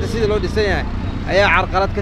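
A man speaking in a street interview, over a steady low rumble of street traffic.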